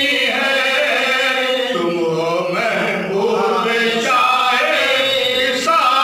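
Male voice chanting a devotional Islamic recitation, with long held notes that slowly rise and fall.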